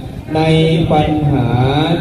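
A Buddhist monk's voice over a microphone, delivering a sermon in a slow, drawn-out, chant-like intonation, starting about a third of a second in.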